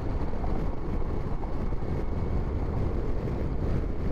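Steady rush of wind and road noise from a Yamaha FJR1300 motorcycle cruising at highway speed, wind buffeting the microphone, heaviest in the low end.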